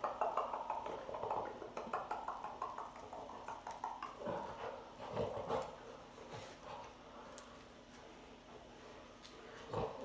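A person chewing and biting corn on the cob, with mouth sounds and small clicks; busier in the first few seconds, then quieter.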